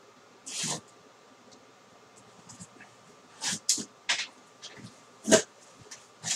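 Box cutter slitting the packing tape on a cardboard shipping box and the flaps being pulled open: a handful of short scraping, tearing sounds, the loudest near the end.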